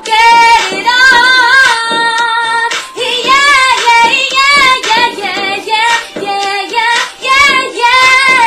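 Female voice singing over a music track, with long sung notes that bend up and down in pitch and no clear words.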